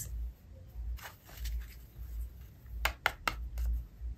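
A few soft, sharp clicks and taps, bunched about three seconds in, from a deck of tarot cards being picked up and handled, over a low steady hum.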